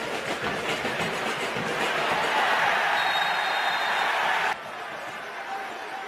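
Stadium crowd noise, a steady roar that swells in the middle and then cuts off abruptly about three-quarters of the way in, giving way to a quieter crowd hum.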